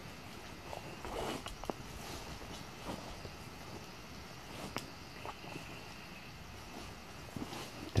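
Quiet footsteps through grass and undergrowth on a pine forest floor, with soft rustling of stems and branches and one sharp click about halfway through.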